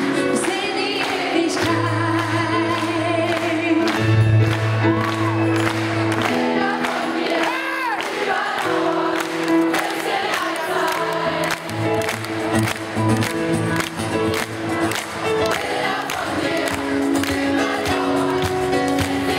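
Live pop band playing a song with voices singing over held bass notes and sustained chords, heard through the room's amplification.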